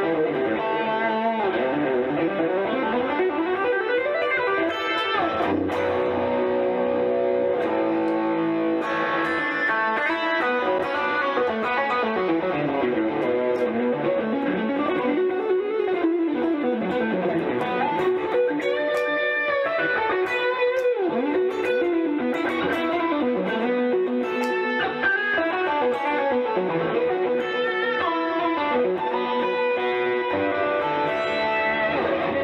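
Electric guitar, a Stratocaster played through a Boss Katana combo amp, playing a continuous improvised lead with many bent and sliding notes.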